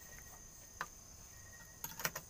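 Crickets trilling in a steady, faint high tone, with a single click about a second in and a few clicks near the end.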